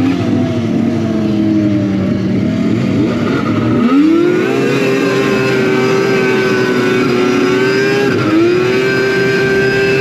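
Yamaha SRX 700's three-cylinder two-stroke snowmobile engine under way, the revs easing down, then climbing sharply about four seconds in and holding high. A brief dip near eight seconds, and it pulls straight back up.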